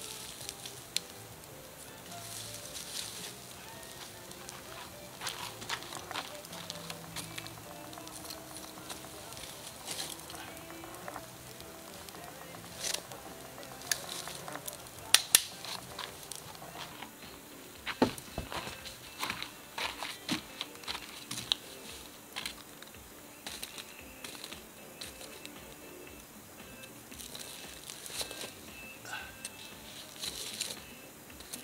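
Wood campfire crackling and popping around a foil packet cooking in the coals, with scattered sharp pops that come thickest and loudest from about halfway through. Faint background music plays underneath.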